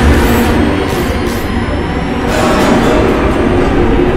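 Loud horror-film soundtrack: a dense, steady rumble with faint high whines slowly rising above it.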